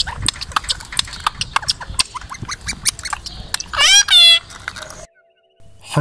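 Indian ringneck parakeets: a run of quick clicks and soft chatter, then one loud squawk about four seconds in. The sound cuts out abruptly just after five seconds.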